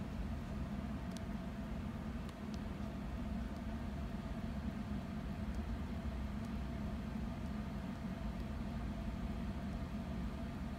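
Computer cooling fans running in a steady hum with several held tones, with a few faint clicks in the first three seconds.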